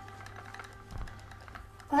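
A quiet room with a few faint, light clicks and one soft, low thump about halfway through, as background music fades away. A man's voice starts right at the end.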